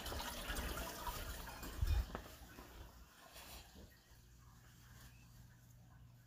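Faint rustling and movement noise of someone walking while holding a phone, with a dull thump about two seconds in. After about three seconds it fades to near silence over a faint steady low hum.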